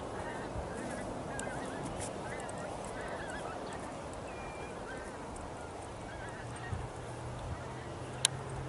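Distant birds calling again and again in short, wavering cries over a steady rushing shoreline ambience.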